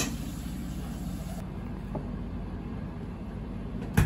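Steady low background hum, with a sharp click at the very start and another at the very end.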